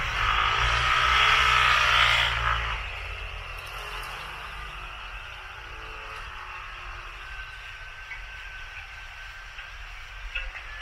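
A vehicle passing close by, loudest about two seconds in and fading out within the next second, leaving steady city background noise.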